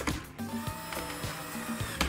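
Cordless drill driving a wood screw into a wooden door, its motor whine running steadily under background music.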